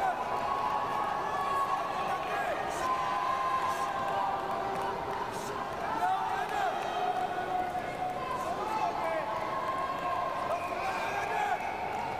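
Several indistinct voices calling and shouting at once, echoing in a large hall, with a few faint thuds.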